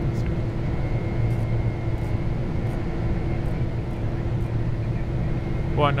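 Steady cockpit noise of a Boeing 747 in its climb: a constant low rumble of airflow and engines with a steady hum running through it.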